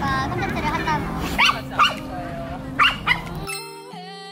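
Small dog barking in about four short, sharp barks over outdoor background noise. The barking is cut off abruptly near the end, when music begins.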